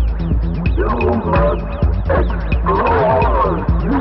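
Electronic music: a steady low bass drone under quick repeating falling synth blips and sliding, wavering synth tones.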